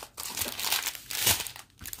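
Small plastic bags of diamond-painting drills crinkling as they are handled and moved, in irregular bursts with a brief lull near the end.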